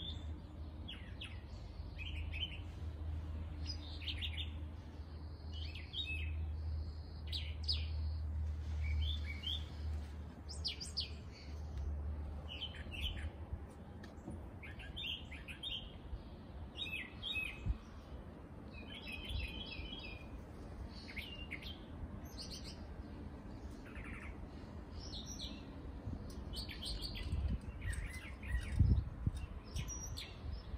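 Wild songbirds chirping and singing, many short calls and trills overlapping throughout. A low steady hum runs under the first half and then fades.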